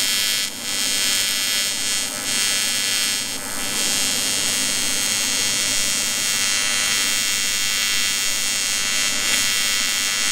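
AC TIG welding arc from a Lincoln Square Wave TIG 200 on an aluminum boat hull, a steady, high, even buzz. It drops out briefly about half a second in and again at about two seconds, then holds steady.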